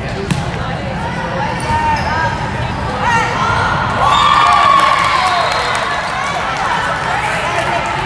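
Busy volleyball gym: balls thudding on the hard court floor and voices echoing in the large hall, with a louder call or cheer about halfway through.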